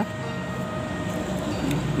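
Steady low background rumble with a faint, even hum and no distinct events.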